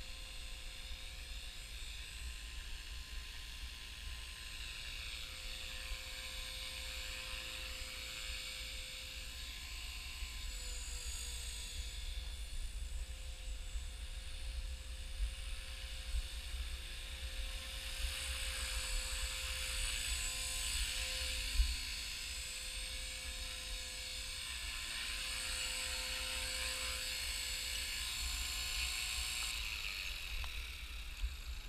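Blade 300 CFX radio-controlled electric helicopter's brushless motor whine and rotor buzz, a steady pitched hum with a high whine above it. It grows louder as the helicopter comes in close and sets down on a dock, and the high whine stops near the end.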